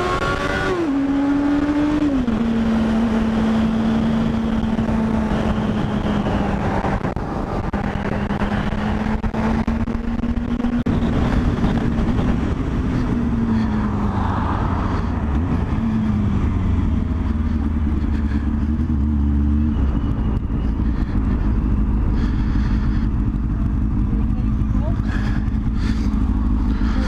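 Honda Hornet's inline-four engine heard from the rider's seat with wind rush. The revs drop about a second in as the rider eases off, hold steady while cruising, dip and recover a few times as the bike slows, and settle to a low idle from about twenty seconds in.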